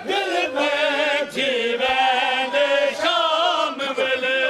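A group of men singing a Punjabi mourning lament (van) together, holding long, wavering notes.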